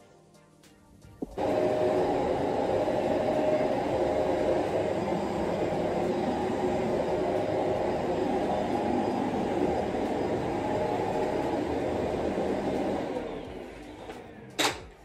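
Upright vacuum cleaner switched on with a click about a second in, its motor running with a loud, steady whir, then winding down near the end as it is switched off.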